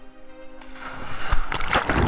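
Splash of a person jumping into water while holding an action camera: a rising rush of noise, a sharp splash a little over a second in as the camera goes under, then loud underwater bubbling and churning. Orchestral music fades out in the first second.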